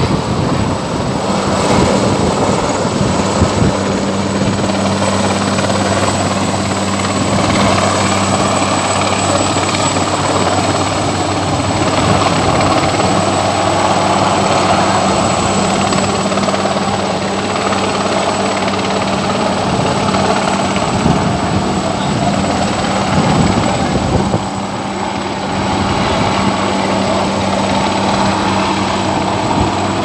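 French Navy helicopter hovering low overhead, its rotor and turbine running steadily with a high steady whine above the rotor noise, during a winch hoist over a lifeboat.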